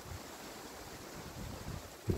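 Wind on the phone microphone: a faint, steady rush with uneven low rumbling.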